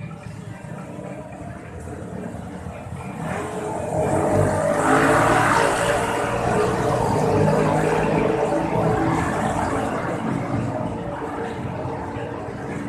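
A motor vehicle passing on the street close by, its engine and road noise swelling about four seconds in and fading slowly toward the end.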